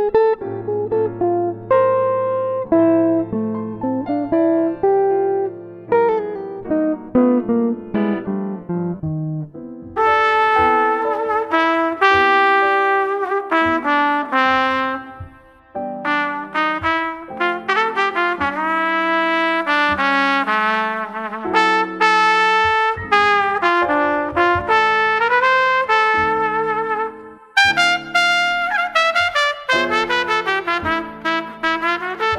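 Instrumental jazz trio with no drums: plucked guitar notes over low bass notes, then from about ten seconds in a trumpet playing the melody in long, held phrases.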